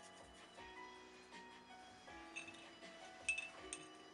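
Soft background music of held notes, and from about two seconds in a few light clinks of a paintbrush knocking against a glass jar of rinse water.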